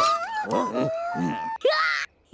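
Cartoon characters moaning and groaning in wordless voices, several at once, as if hurt or dazed from a tumble off their bikes; a quick rising-and-falling glide near the end.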